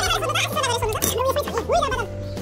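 Men laughing and talking in lively bursts over steady background music.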